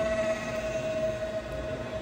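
Electric motor and propeller of a small foam RC warbird in flight, giving a steady high whine.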